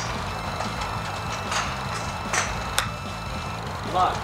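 A golf wedge strikes a ball off an artificial-turf range mat, one short sharp click near the end of the third second, over a steady low background rumble.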